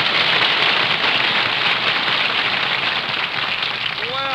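Studio audience applauding, a dense steady clatter of clapping that eases slightly near the end. It is heard through a narrow-band 1940s radio transcription recording.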